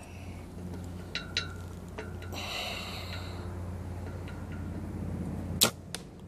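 An arrow shot from a bow: a couple of small clicks and a brief rustle as the shot is readied, then the string's release with a sharp snap about five and a half seconds in, the loudest sound, followed at once by a second, smaller knock. A steady low hum lies underneath.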